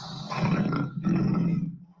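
A low, rough roar-like growl that lasts about a second and a half and stops just before the end.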